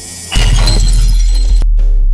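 Intro sound effect over backing music: a short rising swell, then about a third of a second in a sudden loud crash with a bright, noisy top that dies away by about a second and a half, over a deep bass boom that keeps ringing. The music's repeating beat returns near the end.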